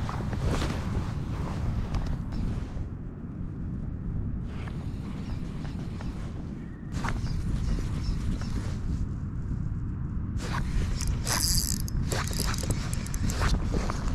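Spinning reel (Shimano Stella) being cranked to retrieve a lure, in spells with short pauses, over a steady low background rumble. A run of sharp clicks comes near the end.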